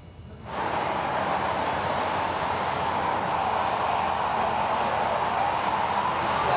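Steady hiss and hum of traffic and outdoor air through the field reporter's open microphone on a live link, cutting in suddenly about half a second in. The line is open, but no voice comes through it yet.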